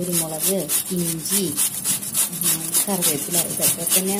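Beetroot being grated on a stainless steel box grater: rapid, regular scraping strokes of the vegetable against the metal grating holes.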